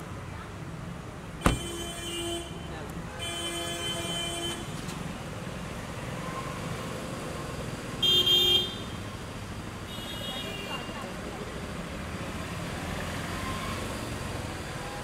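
Street traffic noise with a car door shutting in one sharp thump about a second and a half in, and several short car-horn toots, the loudest about eight seconds in.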